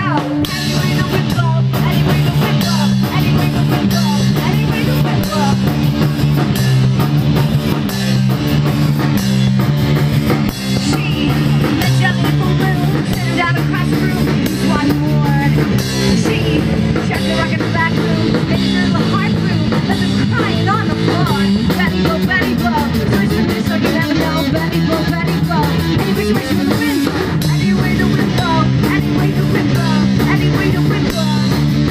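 Punk rock band playing live and loud: electric guitars and a drum kit driving a steady, repeating chord pattern.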